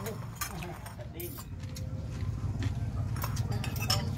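Quiet talk at a meal table, with a few sharp clinks of metal spoons and forks against ceramic plates and bowls.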